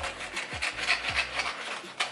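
Scissors cutting through a sheet of paper, a run of short scratchy snips with paper rustling, over background music with a low beat about twice a second.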